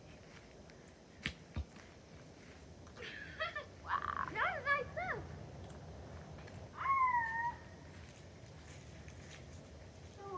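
A child's distant voice calling out: a few short, pitch-bending shouts about three to five seconds in and one long drawn-out call about seven seconds in. Two soft knocks come about a second in.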